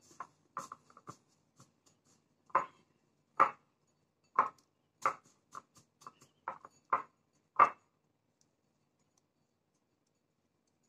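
Hands coating a ball of ube halaya dough in sesame seeds inside a ceramic bowl: fingers and the dough ball knock and click against the bowl in about a dozen sharp, irregular taps.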